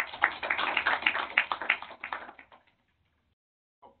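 An audience applauding, a dense patter of claps that thins out and stops after about two and a half seconds.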